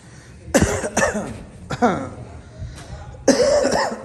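A person coughing: four harsh coughs, the last one, near the end, the longest and loudest.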